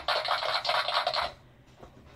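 Scratchy rustling of things being handled close to the microphone, lasting a little over a second and then stopping.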